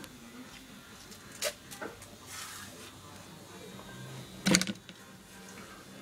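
A banana being peeled by hand in a quiet kitchen: faint soft tearing of the peel, a short click about a second and a half in, and a single sharp knock about four and a half seconds in.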